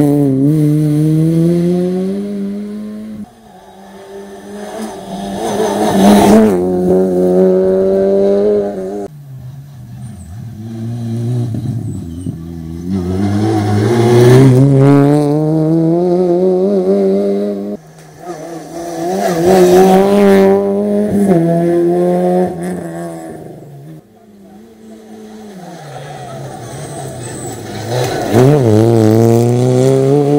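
Rally cars at full stage pace, passing one after another. Each engine revs up, its pitch climbing as the car accelerates, and gets loudest as it goes by. There are several separate passes in a row.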